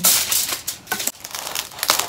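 Crisp crunching and crackling of crackling-skinned roast pork belly being cut, in irregular bursts, loudest at the start and again near the end.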